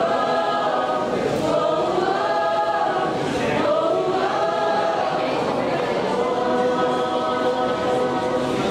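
A choir singing, many voices holding sustained chords in slow phrases.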